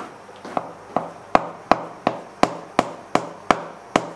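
A cleaver chopping through folded dough onto a wooden cutting board as hand-rolled noodles are cut. There are about ten even chops, roughly three a second, starting about half a second in.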